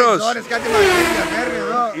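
A man imitating a revving engine with his voice: a rough, buzzing vocal sound with sliding pitch lasting about a second and a half, after one spoken word.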